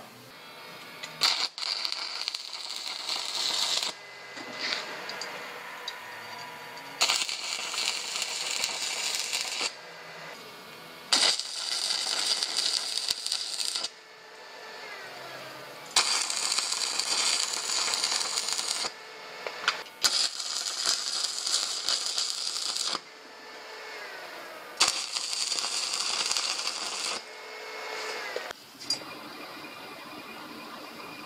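A handheld power tool on metal, run in six bursts of two to three seconds each that start and stop suddenly, with the motor's pitch falling as it spins down between bursts.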